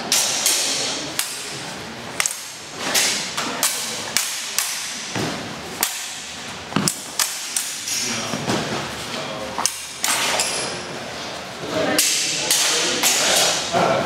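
Thin practice swords clashing and striking during a fencing bout, mixed with stamping footfalls on the floor: a long run of irregular sharp clacks and thuds, some with a brief ring.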